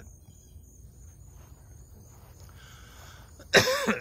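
Faint outdoor background, then a man's loud, voiced cough bursts out about three and a half seconds in. He puts the coughing down to some pollen in the air.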